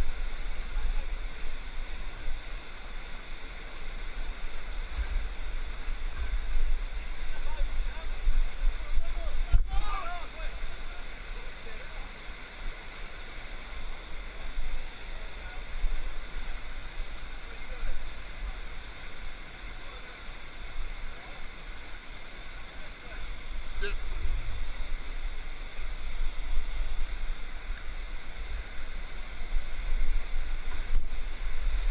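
White water surging and rushing around rocks, a steady churning rush that swells and eases in waves.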